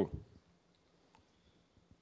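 A man's word trails off at the start, then near silence with the room tone of a conference room and one faint click just over a second in.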